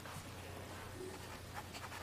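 Faint scratching of a pen writing on paper close to a desk microphone, over a low steady hum.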